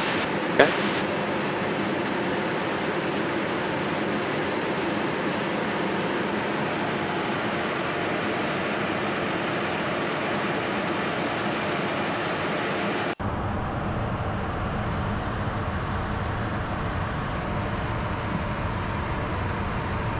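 Steady cockpit noise of a Pilatus PC-24 business jet in flight: airflow over the airframe and the drone of its twin Williams FJ44 turbofans, with a couple of brief clicks right at the start. About 13 seconds in the sound changes abruptly to a deeper, duller rumble with less hiss.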